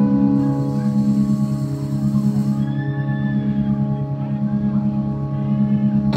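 Live rock band's amplified guitars holding a sustained, ringing chord as a steady drone with no drums, an ambient swell between songs at a concert.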